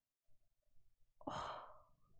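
A woman's short breathy sigh a little over a second in, starting suddenly and fading within under a second.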